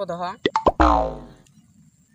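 Cartoon 'boing' comedy sound effect: two quick clicks, then a loud springy twang whose pitch slides downward as it fades out within about half a second.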